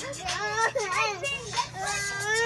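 Toddler babbling without words, her voice rising and falling in pitch in short bursts.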